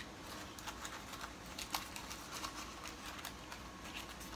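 Faint, scattered small clicks and taps from hands handling objects on a table, over a low room hum.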